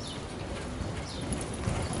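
Hoofbeats of an American Quarter Horse gelding loping on soft arena dirt, a run of dull thuds that grows louder toward the end.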